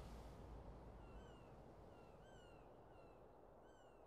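Near silence: a faint low rumble fading out, with soft falling chirps of bird calls, about one a second, from about a second in.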